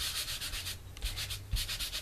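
A baby wipe scrubbed quickly back and forth over strips of masking tape, a rapid run of dry scratchy rubbing strokes that pauses briefly about halfway through.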